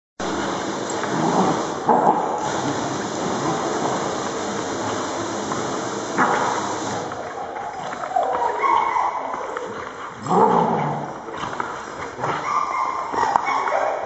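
Dogs playing right at the microphone, with a few short vocal sounds from them about halfway through and a rumble of scuffling and handling noise.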